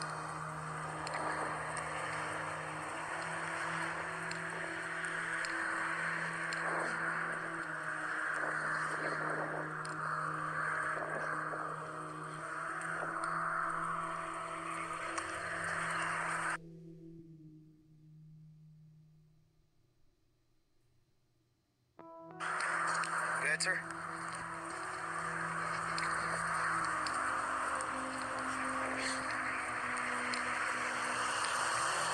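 Wind and highway traffic noise on a body-worn camera's microphone, with a low steady music drone underneath. The sound cuts out abruptly for about five seconds past the middle, then returns.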